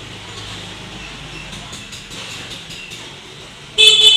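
Steady background traffic noise, then a short, loud vehicle horn beep near the end.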